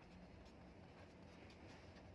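Faint scratching of a pen writing on paper, with a few soft strokes over a near-silent background.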